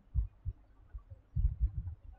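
A few low, muffled thumps, then a quick cluster of them near the end, like knocks or bumps carried to the microphone.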